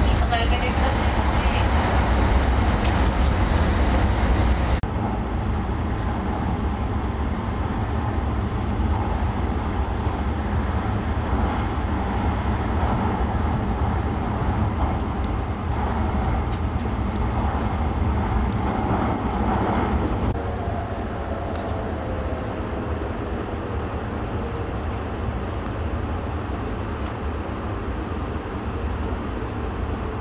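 Steady running noise of a shinkansen heard from inside the passenger cabin, a low rumble with a hiss of travel. In the last third it quietens and a faint whine falls in pitch as the train slows to stop at the station.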